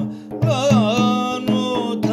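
Turkish Sufi hymn (ilahi) sung over a steady drone and regular hand-percussion strokes. After a brief dip, the voice comes in about half a second in with a wavering, ornamented phrase and settles into a long held note.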